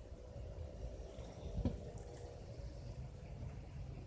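Garden hose spraying water, a faint hiss over a low rumble, with a single thump about one and a half seconds in.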